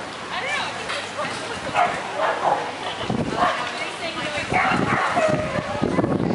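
A dog yipping and barking repeatedly over people's voices, with short high calls that rise and fall in the first second.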